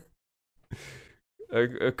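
A pause in the talk: dead silence, then a short breathy exhale from a man about two-thirds of a second in, and speech starting again near the end.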